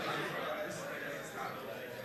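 Indistinct background talking of several people in a large room, with no single clear voice.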